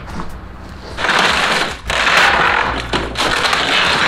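Wooden boathouse wall cracking and crunching as the winch cable pulls it apart, a dense run of splintering from about a second in.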